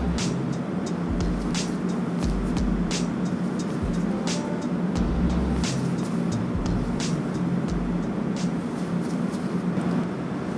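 Background music with a deep bass line and a sharp drum hit about every second and a half.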